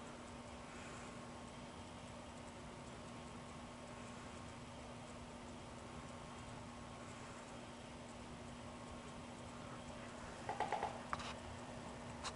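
Quiet room tone with a faint steady hum, broken near the end by a quick run of small clicks and taps.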